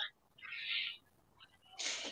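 A person's breath into a microphone, heard as a short, faint hiss about half a second in, with another breath starting near the end.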